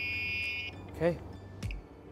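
12-volt circuit light tester giving a steady high-pitched beep that cuts off suddenly under a second in. The beep means it has found 12 volts on the blue wire of the seven-way harness: the brake signal coming from the brake controller.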